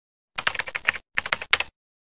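Computer keyboard typing sound effect: two quick runs of key clicks with a short pause between them, laid under animated title text.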